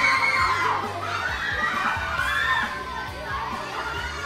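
A group of children shouting excitedly, several high voices overlapping and rising and falling in pitch.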